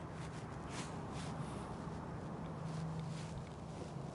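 Faint outdoor background: light wind noise with a low, steady hum and a few soft ticks.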